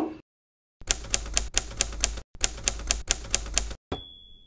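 Typewriter sound effect: two quick runs of key clacks, about six a second with a short break between them, then a bell ding right at the end.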